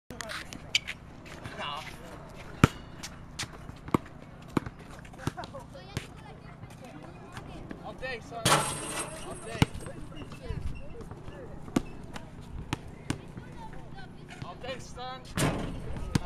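A basketball bouncing on an outdoor hard court: sharp, irregular bounces about one to two a second, with voices in the background.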